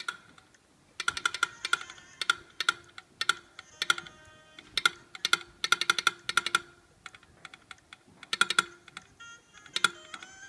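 Old telegraph apparatus clicking out Morse code in rapid runs of sharp, ringing metallic clicks, each run about a second long with short pauses between.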